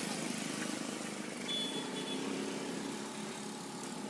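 Steady ambient noise, an even hiss-like background with no clear source standing out, and a brief faint high tone about a second and a half in.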